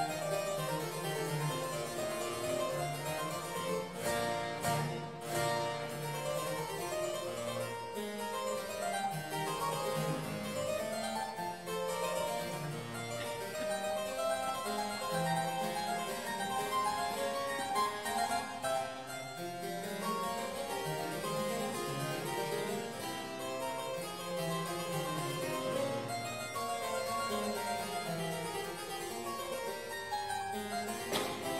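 A Walter Chinaglia harpsichord played solo: an unbroken stream of plucked notes, with a moving bass line beneath a busier upper line.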